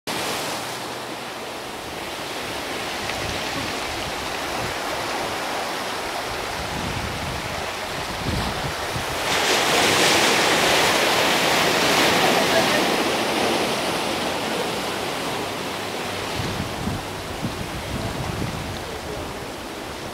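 Outdoor rushing noise of wind and sea surf. It swells suddenly about nine seconds in, stays up for a few seconds, then eases back. Low buffeting of wind on the microphone comes and goes.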